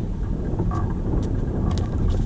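Wind buffeting the microphone, a steady low rumble that dominates. A few faint sharp ticks from a tennis rally sit on top of it, about a second in and again near the end.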